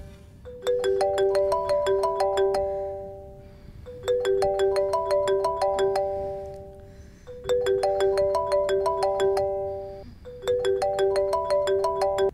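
Smartphone ringtone: a short marimba-like melody of quick notes, played four times with a brief gap between, for an incoming call.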